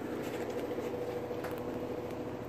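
A steady mechanical hum with a constant mid-pitched tone, running evenly throughout.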